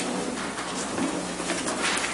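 Rustling and small handling clicks, with a faint held low note from the instrument dying away in the first second.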